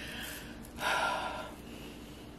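A woman's short, breathy intake of breath about a second in, lasting about half a second.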